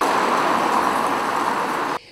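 Street traffic noise: a steady hiss of cars on a town street, cutting in and out abruptly.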